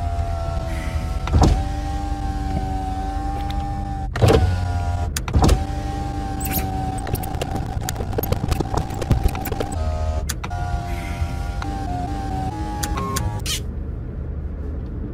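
A steady whine at one pitch over a low hum, broken by scattered sharp clicks; its pitch drops in a few small steps near the end.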